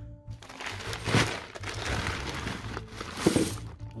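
Plastic crinkling and coins clinking as small plastic-wrapped bags of 50p coins are tipped out of a large bank coin bag, with two louder knocks, about a second in and near the end, over background music.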